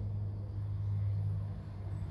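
Steady low background hum with no other distinct sound.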